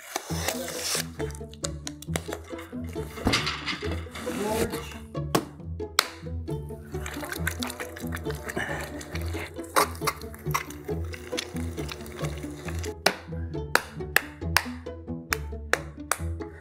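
Background music with steady, held low bass notes, with many sharp clicks and knocks over it.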